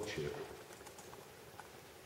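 A man's voice ends a phrase at the start, then a quiet pause of room tone with a few faint, scattered clicks.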